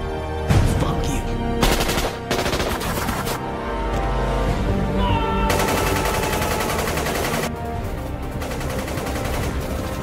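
Bursts of rapid automatic gunfire in a film shootout over a music score. The longest burst runs for about two seconds just past the middle.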